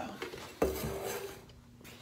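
Clatter and clinking of small hard objects being handled, starting suddenly about halfway in, with a brief ring and ending in a sharp knock.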